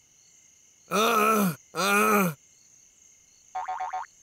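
A cartoon bear's voice giving two drawn-out calls, each under a second, pitch rising then falling, over faint steady night-insect chirring. A short rapid trill comes near the end.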